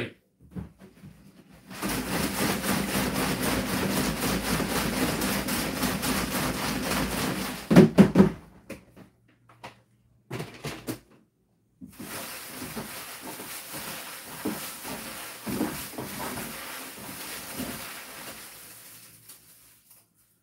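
Hands stirring a clear plastic box full of folded paper raffle slips, a long dense rustle of paper. There are a couple of loud knocks about eight seconds in, a short pause, then a second, quieter bout of rustling as a slip is picked out.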